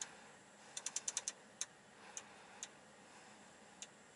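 Small plastic clicks from the 2018 Mercedes CLS's centre-console touchpad and controller being worked through the infotainment menus. A quick run of about six clicks comes about a second in, then single clicks at uneven gaps.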